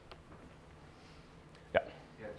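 Low room tone in a pause between speech, broken near the end by one short, sharp sound.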